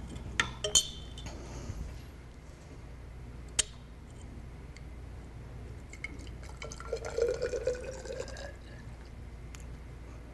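Liquid poured from a small glass bottle into a narrow glass test tube, with a few glass clinks in the first second and a faint gurgle and rising filling tone near the end as the tube fills.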